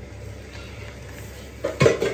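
A wooden spoon stirring and scraping rice around a frying pan over a steady low hum, with a louder knock near the end.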